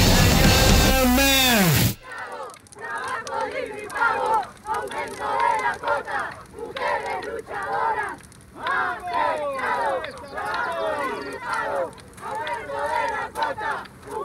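Music with drums slowing to a stop, its pitch sliding down like a tape halting, and cutting off about two seconds in. Then a crowd of protesters shouting and chanting in irregular waves.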